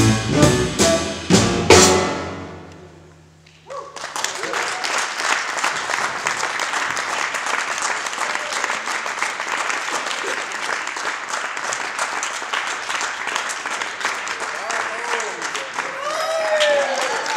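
A jazz quartet of tenor saxophone, piano, double bass and drum kit ends the tune with a few sharp accented hits together, which ring out and die away over about two seconds. Then an audience applauds steadily.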